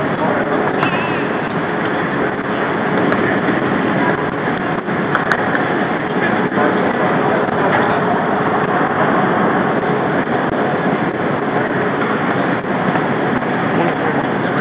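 Steady traffic noise at a covered curbside, with faint muffled voices underneath.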